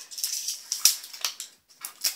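Plastic candy wrapper crinkling and crackling as it is peeled open by hand, a string of short sharp crackles with the loudest snap a little under a second in.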